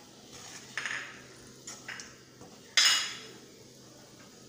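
A spatula stirring and scraping paneer pieces around a nonstick kadai in a few short strokes. About three seconds in comes one sharper, louder knock or scrape against the pan.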